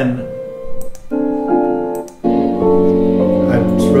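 Recorded piano music playing back from a computer: repeating piano notes that drop away and restart twice. About two seconds in, fuller sustained chords with a held low note come in.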